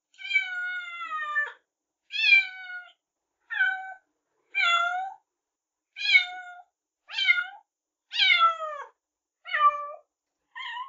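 A domestic cat meowing over and over, about eight meows with short silences between them, most falling in pitch; the first is long and drawn out.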